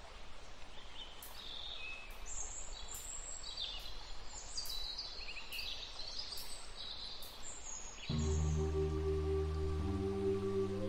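Birds chirping in short high calls over a steady background hiss of outdoor ambience. About eight seconds in, sustained ambient music tones and a low drone come in.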